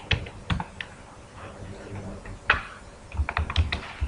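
Typing on a computer keyboard: quick runs of keystroke clicks, with one louder keystroke about halfway through and a faster run near the end, as a compile command is typed into a command prompt.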